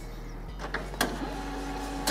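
HP Colour LaserJet 2600n colour laser printer starting a print job: a sharp click about a second in, then its motors set up a steady whine as it begins printing a demo page.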